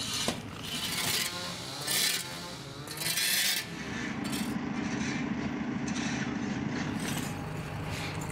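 Rubble clearance: scraping and clattering of bricks and debris in irregular bursts, then from about four seconds in the steady running of heavy machinery diesel engines (backhoe loaders and a tractor), which drops to a lower steady hum near the end.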